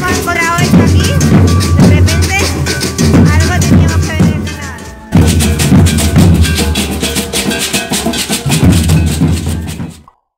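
Live street percussion: large rope-tuned wooden bass drums beaten in a steady rhythm, with beaded gourd shakers rattling over them. The sound dips and jumps back about halfway, and cuts off abruptly at the end.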